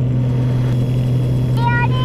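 Steady low drone of the Piper Saratoga's six-cylinder piston engine and propeller in flight, heard inside the cabin. Near the end a young girl's high-pitched whine starts.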